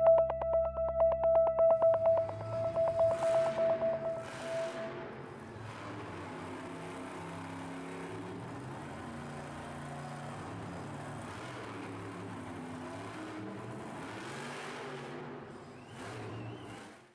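A pulsing synthesizer tone fades out over the first few seconds and gives way to steady, noisy ambience of a monster truck arena, with a low vehicle rumble running under it.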